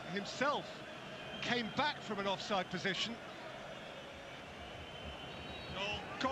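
Quiet football match TV commentary: a man's voice in a few short phrases in the first half, over a low steady background of broadcast noise.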